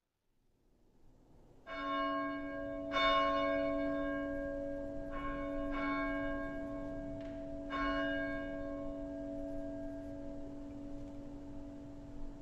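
A bell struck five times at uneven intervals, each strike ringing on so the tones overlap and slowly fade, the second strike the loudest. It is rung to mark the start of worship.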